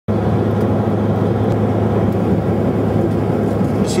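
Steady drone of a turboprop airliner heard from inside the cabin: an even, low propeller and engine hum over rushing air.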